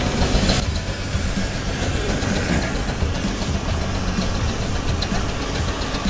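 A short burst of hiss for about half a second, then the 150 Case steam traction engine running with a steady mechanical clatter.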